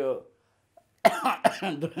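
A man's voice says a short word and pauses for under a second. About a second in he gives a short cough, then his speech resumes.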